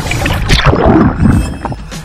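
Seawater sloshing and splashing right at an action camera held at the surface, loudest from about half a second to a second and a half in. It drops away near the end as the camera goes under.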